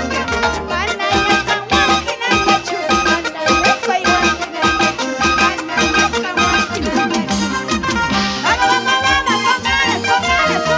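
Latin American dance-band music played at full volume: a steady, even beat under held melody lines that waver in pitch.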